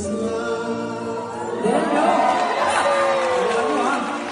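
Two men singing a duet through microphones and a PA, holding a note in harmony. About one and a half seconds in it gives way to a louder jumble of overlapping voices sliding in pitch, whoops and laughter.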